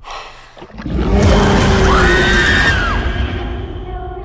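Horror film trailer's climactic sting: a sudden hit, then a loud swell of dense music and noise with one high cry over it that rises, holds for about a second and falls away.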